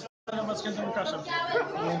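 Talking and background chatter in a large room, with the sound cutting out completely for a moment right at the start.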